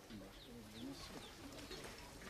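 Faint outdoor ambience with a few short, high bird chirps over faint distant voices.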